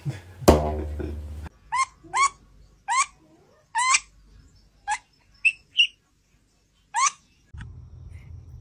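A loud sudden thump with a ringing tail about half a second in. Then a weasel's short, sharp squeaks, about eight of them at uneven gaps, each a quick rising chirp.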